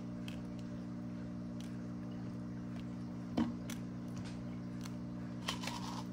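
Small aquarium gravel pebbles ticking faintly as they are placed and pressed around a plant stem in a small plastic cup, a few scattered ticks with one louder about three and a half seconds in. A steady low electrical hum runs underneath.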